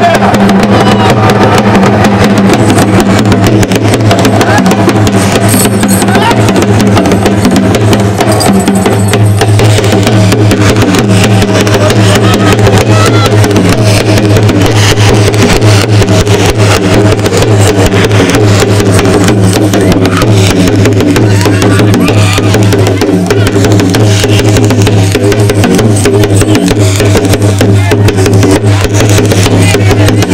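Loud live devotional folk music led by dhol drums, struck in a fast, driving rhythm over a steady low tone.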